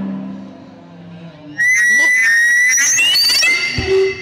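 Music fading out, then a loud, shrill, high-pitched sound starts suddenly. Its pitch rises slowly for about two seconds, with a second tone gliding higher above it. A low thump comes near the end.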